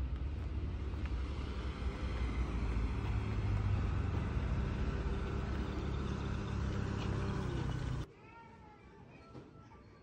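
Outdoor street noise: a steady low rumble of traffic and air, with a held engine-like hum. It cuts off sharply about eight seconds in, leaving a much quieter stretch with faint gliding pitched tones.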